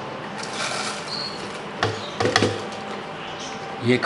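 Crushed rock sugar crystals poured into a grinder jar full of dry bay leaves: a soft rattling rustle, with a few sharp clicks about two seconds in.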